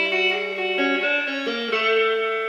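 Fender Stratocaster electric guitar played clean: single picked notes changing about every half second over a ringing low note.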